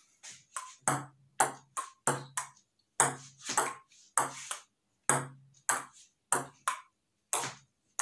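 Table-tennis rally on a wooden dining table: a celluloid ping-pong ball clicking off the tabletop and the paddles in a steady back-and-forth, about two clicks a second.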